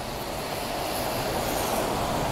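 Articulated city bus driving past close by on a wet street, its engine and tyre noise growing louder as it comes alongside.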